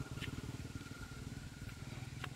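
A small engine running steadily, heard as a low rumble of rapid, even pulses with a faint steady whine above it.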